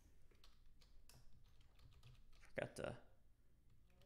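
Faint computer keyboard typing: a run of light keystrokes as a password is entered. A brief voice sound comes about three seconds in.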